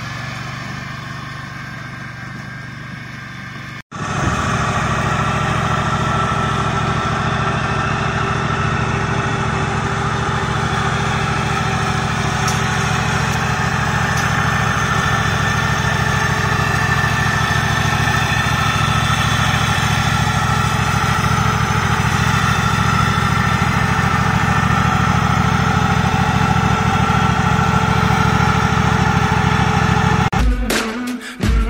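Countax ride-on mower's petrol engine running, fading as the mower moves away over the first few seconds. After a sudden break about four seconds in, the engine runs steadily and louder from close by, the mower standing still.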